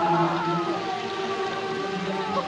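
A woman's high wailing cry of grief, rising and falling in pitch about the start, over mournful film music of long, low held notes.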